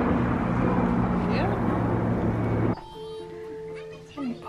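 A steady motor drone with a rushing noise over it, cutting off abruptly under three seconds in, then a quiet room with a faint steady tone.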